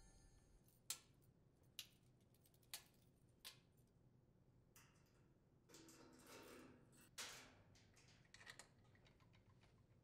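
Near silence broken by faint sharp clicks about a second apart, then a faint metallic rattle and clinking of a light link chain being handled and hooked to hold up the raised steel top of a top-load washer.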